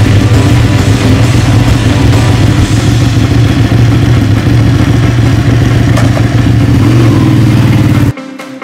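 Motorcycle engine running loudly and steadily, its pitch holding level.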